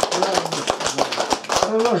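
A few people clapping with scattered, irregular hand claps over overlapping chatter.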